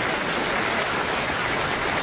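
Audience applauding, a steady even clatter of many hands.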